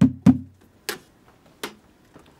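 Sharp knocks on a stainless steel mash tun as the last grain is emptied in: a quick run of four with a short hollow ring, then two single clicks.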